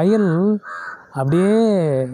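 A man's voice intoning words in long, drawn-out phrases whose pitch rises and falls. About halfway through there is a short harsh sound between the phrases.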